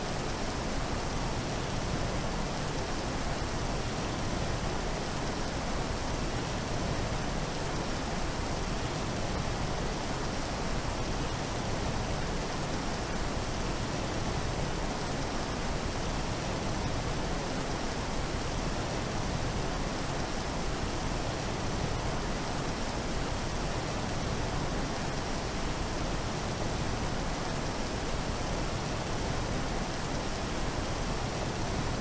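A steady, unchanging hiss of noise like heavy rain or a waterfall, a water-themed texture in a sound-sculpture composition.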